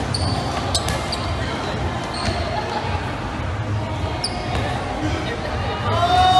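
Dodgeballs striking and bouncing on the court a couple of times in the first second, with several short high squeaks, over steady crowd noise in a large hall.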